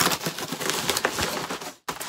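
Padded bubble mailer being torn open by hand, with rapid crinkling and crackling of the paper and plastic. There is a brief break near the end.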